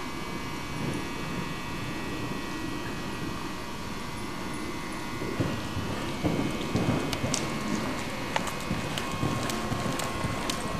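Muffled hoofbeats of a Welsh pony cantering and jumping on soft indoor arena footing, over a steady hiss and hum of camcorder background noise. The hoof thuds get louder about halfway through, with a few sharp clicks near the end.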